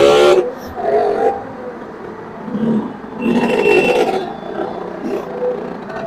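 Fairground crowd noise with scattered voices, a loud call right at the start.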